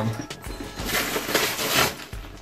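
Christmas wrapping paper being torn off a gift box: a noisy rip and rustle of paper starting about a second in and lasting about a second.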